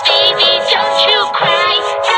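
Cartoon singing over music, run through distorting audio effects that make the voice's pitch waver and bend throughout.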